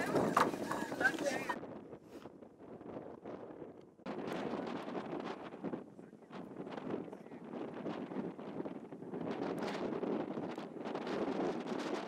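Wind on the microphone with faint, indistinct voices. In the first second and a half there is louder chatter of many people, which cuts off suddenly.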